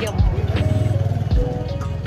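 Lo-fi background music with a soft, slow kick-drum beat, over the low rumble of a vehicle engine running.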